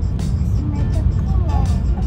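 Steady low rumble of a Shinkansen bullet train running, heard from inside the passenger cabin, with a child's voice faintly over it.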